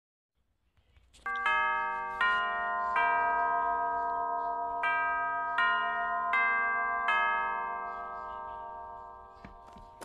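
Bell-like chime notes opening a song: about eight struck tones, one after another at a slow, even pace, each ringing on and fading. They die away near the end.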